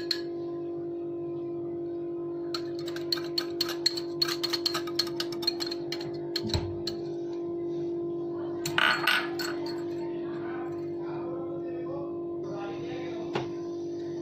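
A fork beating egg yolk in a small glass bowl, a quick run of light clinks against the glass lasting a few seconds. Near the middle comes a short scrape as the yolk is poured out over the beaten egg whites.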